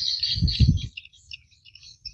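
Small birds chirping and twittering, busiest in the first second and thinning out after, with a few low thuds about half a second in.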